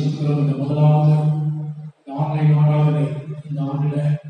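A man's voice through a microphone, intoning in a chant-like way: two long phrases held on a nearly steady pitch, with a short break about two seconds in.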